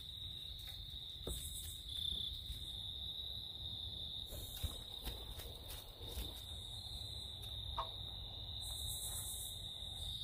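Crickets trilling in a steady, high-pitched chorus. A higher, raspier insect call breaks in every few seconds, and a few faint knocks come through.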